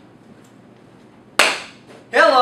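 A single sharp smack a little past halfway, dying away quickly in the room, against faint room tone.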